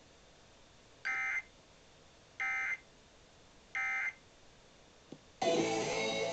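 Emergency Alert System end-of-message data bursts, three short buzzy digital tone bursts about a second and a half apart, sounding the close of the tornado watch alert over a small radio speaker. Near the end the station's regular programming comes back in with music.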